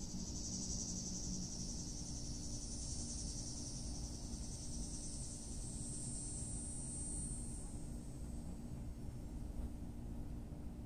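A steady, high-pitched chorus of insects, fading out about eight seconds in, over a low steady hum.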